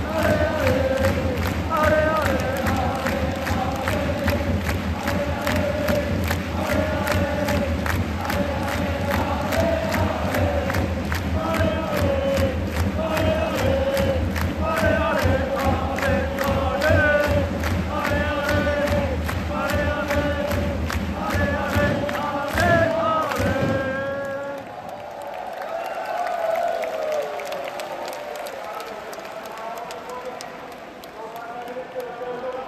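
Football supporters in a stadium singing a chant together over a fast, steady beat. The chant breaks off about 24 seconds in, leaving looser crowd noise and cheering.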